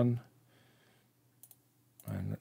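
Two faint computer mouse clicks close together about one and a half seconds in, against a quiet room.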